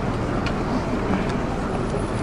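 Steady outdoor background noise with no clear single source, and a faint click about half a second in.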